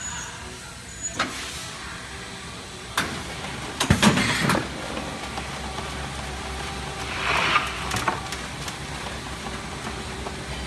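Paper trim-board machine running with a steady low hum, with sharp knocks and clacks as boards come out onto and are handled on its stainless-steel outfeed tray, a cluster of them about four seconds in and a brief rushing, sliding noise about seven seconds in.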